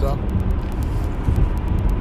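A pause in a man's talk, filled by a steady low rumble of background noise with a faint hiss above it.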